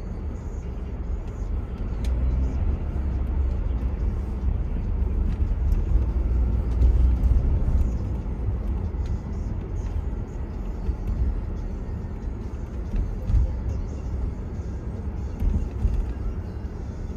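Low, steady rumble of a car driving on city streets, heard from inside the car, growing louder over the first half and easing off after.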